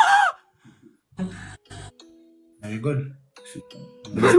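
Live-stream audio: a voice shouting at the very start, then short scattered bursts of voices, with two brief steady chime-like tones, the first about two seconds in and the second near the end.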